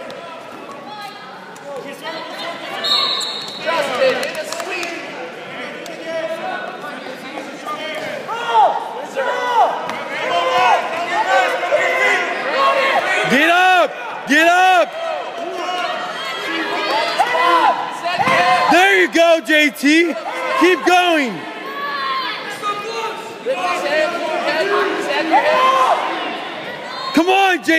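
Coaches and spectators shouting short calls at wrestlers in an echoing gym, the yells coming thicker and louder from about eight seconds in as the match goes to the mat and toward a pin.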